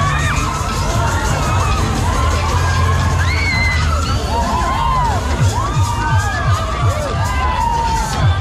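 Riders screaming on a spinning funfair thrill ride, many shrieks overlapping, over loud dance music with a heavy bass. A quick run of bass beats comes in about five seconds in.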